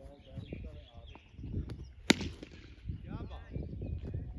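Men's voices calling out, with one sharp crack about two seconds in, the loudest sound.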